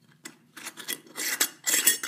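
Metal screw-on lid being twisted onto a glass jar, its threads rasping against the glass rim in several short turns that grow louder toward the end.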